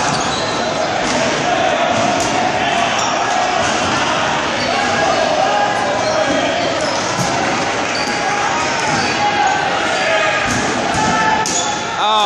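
Rubber dodgeballs bouncing and smacking off the gym floor, walls and players in quick, scattered impacts, over continuous shouting from players calling out to one another, all echoing in a large gym.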